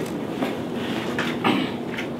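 A cloth-wrapped surgical tray dragged off a metal wire shelf and lifted out of a supply cabinet: a few short scrapes and rustles, over a steady low hum.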